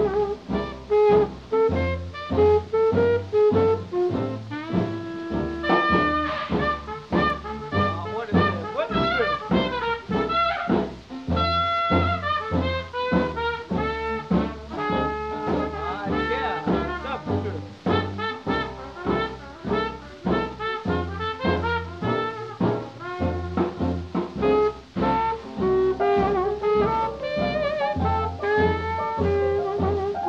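A 1930s swing dance band playing an instrumental stretch, with brass carrying the melody over a steady beat, on an old recording with dull treble.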